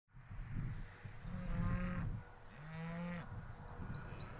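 Dairy cows mooing: two long, level-pitched moos, the second a little lower and shorter.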